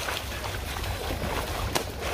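Boots splashing and stomping through a shallow running stream, with a low wind rumble on the microphone; one sharper splash comes near the end.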